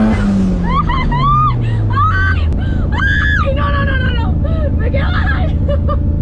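Rotary engine in a Smart car heard from inside the cabin, its revs falling steadily over the first couple of seconds and then settling into a steady low drone. Over the engine, a woman lets out excited laughing shrieks.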